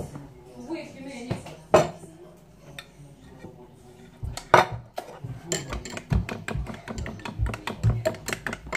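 Dishes clinking and knocking on a table: a sharp clink a couple of seconds in, another near the middle, then a quick run of small knocks and clatters through the last few seconds.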